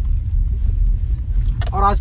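Steady low rumble of a car's engine and tyres on an unpaved dirt road, heard from inside the cabin. A man's voice comes in near the end.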